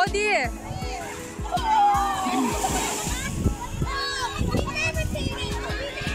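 Children's voices calling out while they play in shallow sea water, with some water splashing, over background music with sustained notes.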